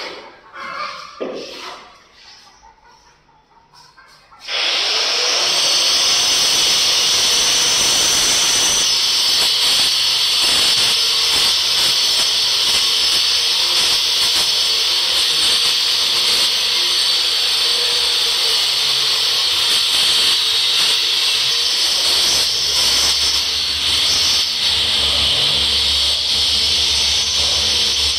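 A few light knocks and shuffles, then about four and a half seconds in a loud, steady, hissing power-tool noise starts abruptly and keeps running, with a low rumble joining near the end.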